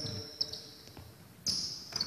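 Basketball shoes squeaking on a wooden court floor as players move in a drill. There are short high squeals at the start, about half a second in and again about one and a half seconds in, with a few faint knocks of a ball bouncing.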